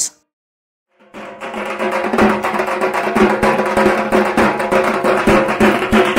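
Silence for about a second, then drums beaten in a fast, dense rhythm over a steady ringing tone.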